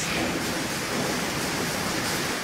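A steady, even rushing noise like hiss or wind, with no tone or rhythm, cutting in suddenly.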